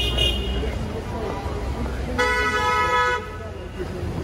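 A car horn sounds once, a steady blast of about a second a couple of seconds in, over the low rumble of street traffic.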